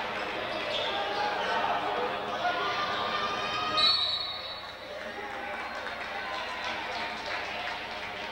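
Basketball being dribbled on a gym floor under crowd chatter, with a short referee's whistle about four seconds in, after which the noise settles lower.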